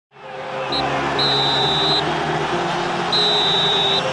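Stadium crowd noise fading in, with a high whistle blown three times: a short peep, then two long blasts of nearly a second each.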